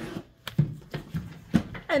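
Shrink-wrapped vinyl LPs and a cardboard shipping box being handled as a record is pulled out: a few short knocks and scrapes.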